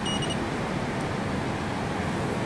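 A short, high-pitched electronic beep from the Honda HS-2000 ultrasound scanner's console as a key is pressed and the image is cleared. A steady background hum follows.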